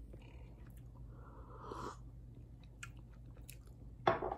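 Faint chewing of a mouthful of fried rice, with a few light clicks of a metal fork against a ceramic bowl and a brief scrape early in the second half.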